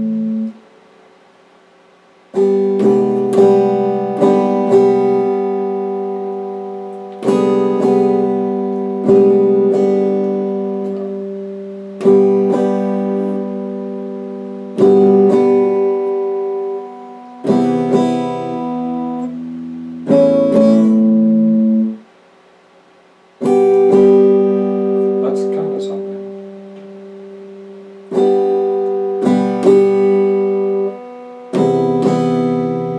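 Electric guitar playing slow strummed chords, each struck and left to ring out and fade over a few seconds, with brief silent pauses about half a second in and again about two-thirds of the way through.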